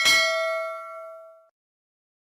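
Notification-bell 'ding' sound effect for a subscribe animation: a click followed by one bell-like chime ringing in several tones, fading out over about a second and a half.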